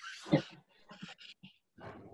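A dog giving a short bark about a third of a second in, followed by fainter scattered noises, picked up over a video-call microphone.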